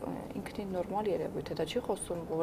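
Speech only: a woman talking steadily.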